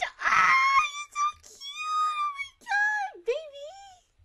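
High-pitched wailing cries: several drawn-out wails whose pitch slides up and down, starting with a breathy gasp-like rush.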